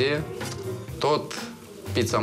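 A man talking over background music with a steady low bass line.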